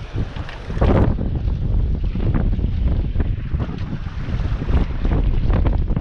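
Strong, gusty wind buffeting the microphone, with a few short knocks and rustles, one sharper than the rest about a second in.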